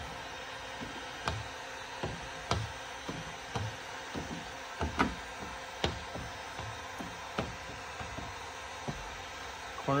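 A hard plastic squeegee card working tint film onto car door glass: a string of short, sharp clicks and taps, irregular, about one or two a second, over a steady hum.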